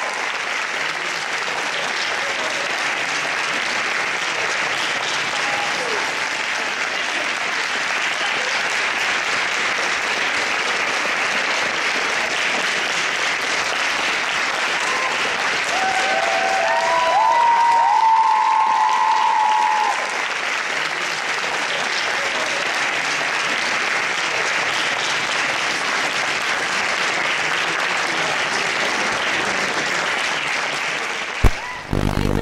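Audience applauding steadily, swelling briefly a little past the middle.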